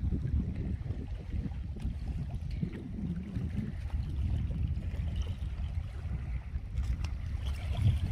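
Wind buffeting the microphone outdoors, giving a low, uneven rumble.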